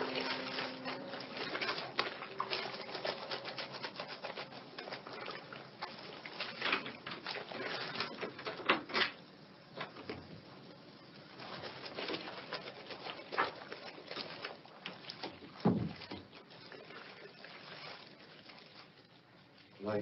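Close, irregular rustling and rubbing with scattered soft knocks and clicks, as of hands handling things, and one short low call about three-quarters through. The tail of a music cue fades out in the first second.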